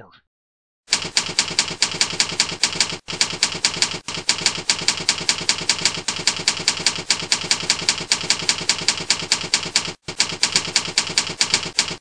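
Typewriter sound effect from a slideshow text animation: a fast, even run of keystroke clicks, about seven a second, as the slide's text types itself out letter by letter. It starts about a second in and breaks off briefly twice.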